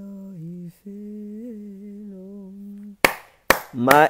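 A person humming long, slow held notes on one low pitch with gentle rises and dips, with a brief break under a second in. Near the end come two sharp hits about half a second apart.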